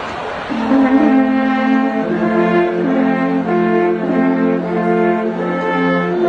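Brass band playing sustained chords, the harmony shifting every second or so, with a brief wash of noise right at the start.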